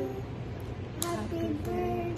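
Women and a small child singing together in drawn-out held notes, with a sharp clap about a second in.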